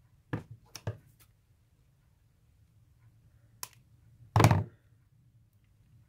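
Craft supplies being handled on a tabletop: a few light knocks in the first second, a sharp click past the middle, then a louder dull thud about four and a half seconds in.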